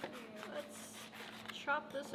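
A knife scratching through a plastic MRE pouch as it is cut open, quiet and rasping. A woman's voice starts speaking near the end.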